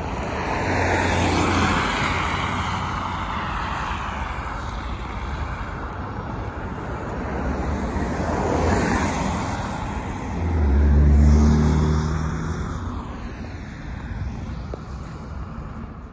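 Road traffic passing close by: several vehicles go past in swells of tyre and engine noise, the loudest about eleven seconds in with a deep engine hum.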